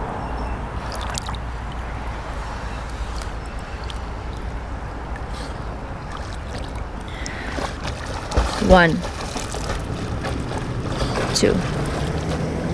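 Lake water lapping and sloshing close to a camera held just above the surface, mixed with wind on the microphone, a steady wash with no sharp events.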